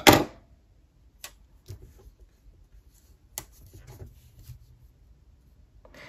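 A sharp click at the very start, then a few faint taps and soft paper rustling as a small paper flower sticker is pressed down onto a planner page.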